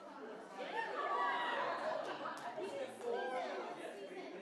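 Overlapping chatter of several people talking at once in a large room, off-microphone, louder in the middle.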